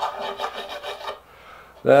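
Pencil scribbling rapidly back and forth on a mahogany board, a quick run of scratchy strokes that stops a little after a second in. The board's face is rough from tear-out where the grain blew out.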